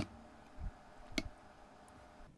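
Open call line on a Life Alert medical alert pendant between its recorded 'please wait' prompts: a faint steady hum with a sharp click at the very start, a soft low thump just after half a second, and another click a little over a second in.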